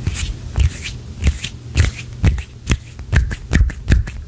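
Close-mic hand sounds: fingers and palms rubbing, brushing and pressing together in an irregular string of crackles and soft thumps, about two to three a second.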